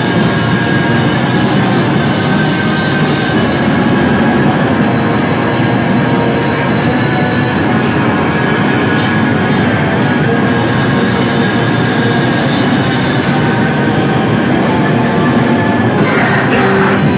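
Hardcore band playing live: heavily distorted guitars and drums in a dense, steady wall of noise with no vocals. Shouted vocals come in near the end.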